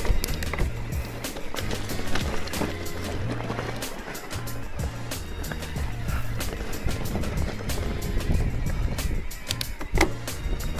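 Background music with a stepping bass line, over the irregular clatter and rattle of an e-mountain bike rolling over a rocky track.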